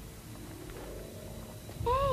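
A cat's meow near the end, one loud call sliding down in pitch, over a low background rumble.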